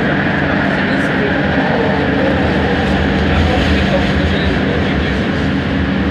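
Cabin noise inside a Bombardier Innovia ART 200 metro car running through a tunnel into a station: a loud, steady running noise over a constant low hum.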